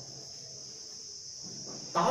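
Quiet room tone with a steady, high-pitched hiss.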